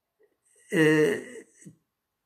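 A man clearing his throat once, a short voiced sound of under a second, followed by a faint small click.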